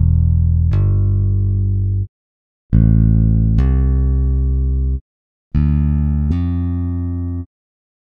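Ample Bass P Lite II sampled electric bass playing three two-note phrases, each about two seconds long with a short gap between. In each phrase a low note rings and a second note is hammered on partway through, taking over from the first without a new pluck gap.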